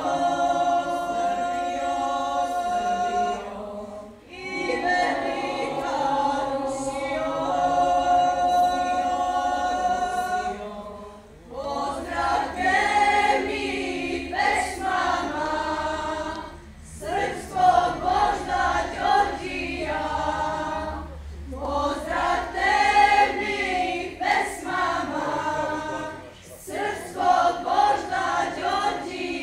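Girls' choir singing a cappella. Long held chords for the first ten seconds or so, then livelier, more wordy phrases with short breaths between them.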